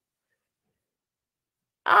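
Dead silence with no room tone, from a muted microphone, until speech begins near the end.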